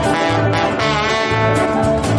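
Live band music: a woman singing at the microphone over instruments and a steady, repeating bass line.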